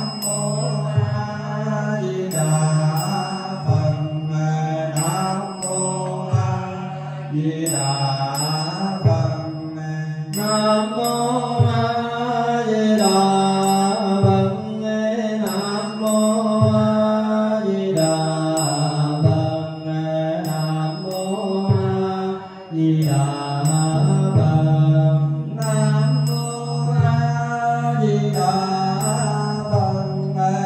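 Buddhist chant sung by a group of voices in long, held tones, with a percussion stroke marking the beat about once a second.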